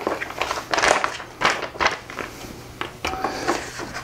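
Paper rustling and crinkling as a large fold-out poster and printed leaflets are handled: an irregular run of short crackles and rustles.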